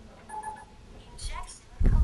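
Short electronic beeps from a talking epinephrine auto-injector trainer about a third of a second in, followed by a brief voice and a loud low thump near the end.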